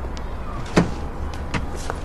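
A Porsche Cayenne's door unlatching and being pulled open: one sharp clunk a little under a second in, then two lighter clicks, over a low steady hum.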